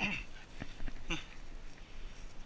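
Two short animal cries falling in pitch, one at the start and one about a second in, with light rustling of dry brush.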